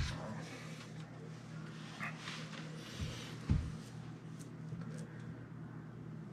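Faint paintbrush strokes on a painted door panel over a low steady hum, with a couple of soft thumps about three seconds in.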